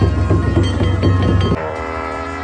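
Tibetan gyaling, the long double-reed horns of monastic ritual music, playing sustained reedy notes over repeated strokes on a large Tibetan ritual drum. About one and a half seconds in the drum strokes drop away abruptly, leaving the held horn notes.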